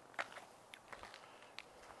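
Faint footsteps on a gravelly yard: a few scattered light clicks and crunches, spaced unevenly, over a quiet background.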